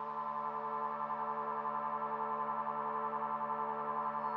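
Sustained synthesizer drone from a film score: several held tones that stay at one pitch with a slight regular pulse in loudness.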